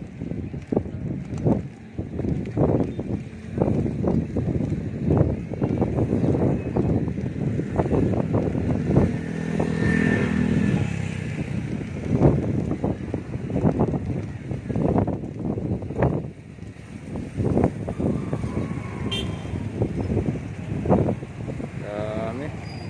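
Road traffic crossing a bridge: a steady rumble broken by many irregular thumps, with a vehicle engine passing close by about ten seconds in.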